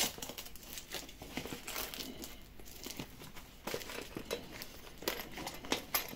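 Hook-and-loop (Velcro) strap being pressed down and adjusted around an e-bike controller box on a rear rack: a run of small, irregular crackles and rustles.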